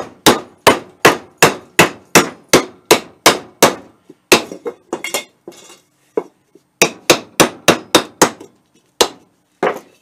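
A hammer striking the thin steel base of a cut-open Motorcraft oil filter can, knocking the bottom in. The sharp metal blows come in quick runs of about three a second, with a couple of short pauses and a few scattered single blows near the end.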